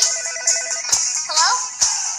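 Trailer soundtrack: a telephone rings with a rapid electronic trill for about the first second over music, then a short voice exclamation.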